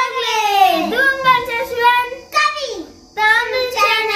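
Young boys' voices in a high, sing-song delivery, with long gliding pitches and a short pause about three seconds in.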